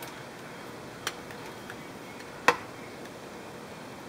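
Two clicks as a fuel sender unit and multimeter test probes are handled: a faint one about a second in and a sharper, louder one about two and a half seconds in, over a steady hiss.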